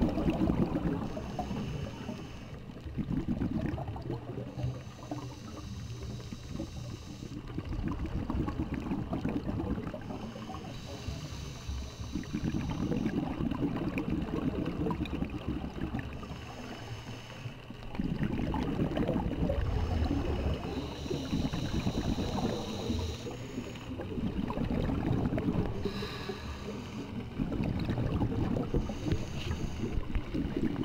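Scuba diver breathing through a regulator underwater: a short hissing inhale, then a bubbling exhale of a few seconds, repeating about every five to six seconds.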